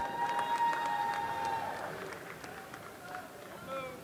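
Hall ambience at a boxing weigh-in: a faint crowd with scattered sharp clicks, and a steady held tone that stops a little under two seconds in.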